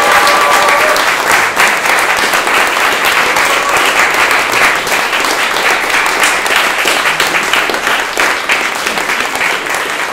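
Audience applauding: many hands clapping steadily, easing off slightly toward the end.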